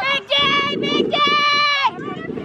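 A high young voice calling out twice in long, sung-out notes, like a sideline chant, over steady crowd and outdoor noise.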